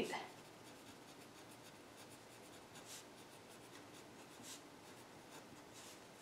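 Faint scratching of a pen writing words on paper in a run of short, quick strokes.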